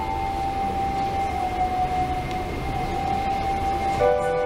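Organ holding one long, steady note.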